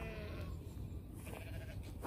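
Sheep bleating in a field: one call that fades out about half a second in, and a fainter second bleat about a second and a half in.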